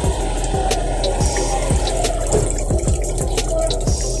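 Wash water pouring off a tilted stainless steel basin of moringa leaves into a sink, a steady splashing run of water while a hand holds the leaves back.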